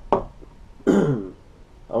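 A man's single short vocal sound about a second in, falling in pitch, like a throat-clearing grunt. It follows a light knock at the very start.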